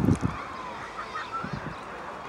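Open-air beach ambience: a steady hiss with a few faint, short distant calls and a low thump right at the start.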